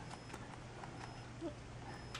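Quiet room tone: a low steady hum with a few faint, brief clicks scattered through it.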